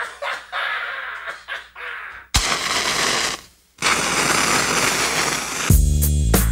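Loud rushing, crackling noise in two stretches with a brief silence between them, then a hip-hop beat with deep bass notes comes in near the end.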